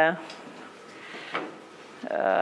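A woman's drawn-out spoken word trails off. A pause of quiet room tone follows, broken by a single faint click about one and a half seconds in.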